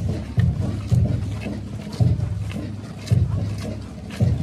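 Wind buffeting the microphone in irregular low rumbling gusts, with faint footsteps of a column of marching cadets on a dirt road.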